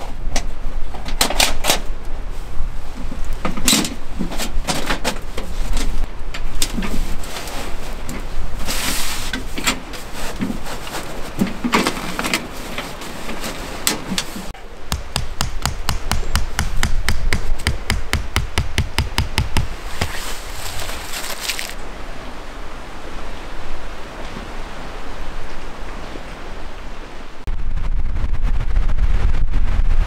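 Tent-pitching handling sounds: a run of irregular knocks and clicks as tent stakes and guy lines are set, then a quick series of evenly spaced clicks in the middle. Low wind rumble on the microphone comes in near the end.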